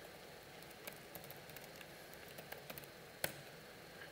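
Faint clicks of laptop keys being typed, with one sharper keystroke a little over three seconds in, over a quiet hiss of room tone.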